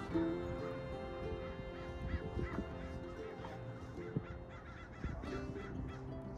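A flock of birds calling over and over, many short calls overlapping, over background music with long held notes.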